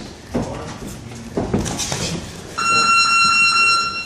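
Boxing gym round-timer buzzer sounding one steady electronic tone for about a second and a half, starting a little past halfway, signalling the end of a round. Before it come a couple of sudden thuds.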